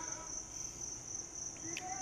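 Faint, steady high-pitched whine or chirr that holds one pitch without a break, over quiet room sound.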